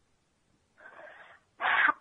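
A person's breathing between sentences: a faint breath about a second in, then a louder, sharp intake of breath near the end.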